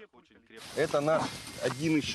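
A man's voice over a steady hiss that starts suddenly about half a second in.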